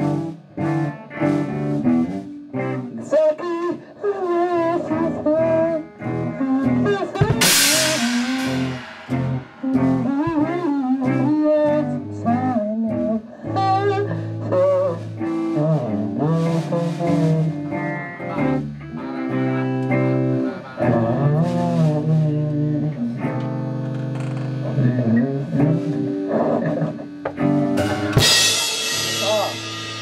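Amateur rock band rehearsing: electric guitars playing chords under a sung vocal through a microphone. The drums are mostly absent, with a cymbal crash about seven seconds in and another near the end.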